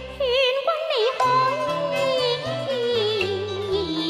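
Cantonese opera (yueju) singing: one voice with a wide, wavering vibrato over sustained instrumental accompaniment. The melody slides gradually downward through the phrase.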